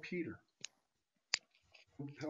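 A short pause in a man's speech: the last of a word trails off, then two brief clicks about 0.7 s apart, the second louder.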